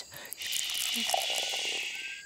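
Pouring sound of milk going into a pot: a steady splashing hiss of poured liquid that starts about half a second in and fades near the end, with a faint rising pitch as it tails off.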